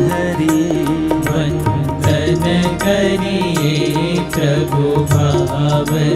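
Devotional Swaminarayan kirtan music: a tabla plays a steady rhythm of regular strokes under a sustained, gliding melody.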